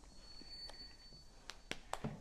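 Mostly quiet, with a faint high steady whine during the first second and three sharp clicks in quick succession near the end.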